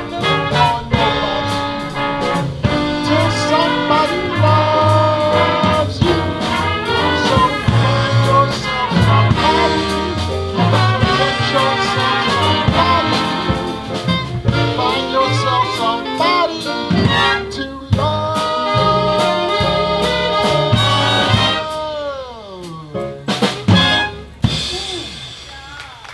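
A swing big band playing full out, with brass and saxophones over the rhythm section. Near the end the band slides down in a long falling glide, hits one short final chord and the sound dies away: the end of the tune.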